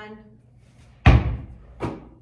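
A basketball dropped from about two metres hits a hard floor once with a loud, sharp smack about a second in, then gives a smaller slap just under a second later as it is caught by hand on the rebound.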